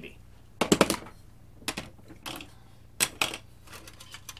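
Small hard plastic objects being handled: a battery and its battery clip picked up and fitted together, giving a few sharp clicking clatters. The loudest is a quick flurry about a second in.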